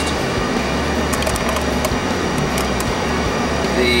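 A large shop fan running steadily: an even rush of air over a constant low hum, with a few light clicks.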